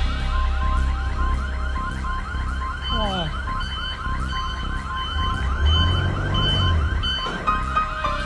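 An electronic alarm sounds a fast, evenly repeated rising warble, about five rises a second, together with a regular run of short beeps, over background music with a deep bass.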